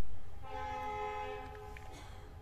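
A steady horn-like tone, several pitches sounding together, held for about a second and a quarter from about half a second in, after the fading tail of a thump.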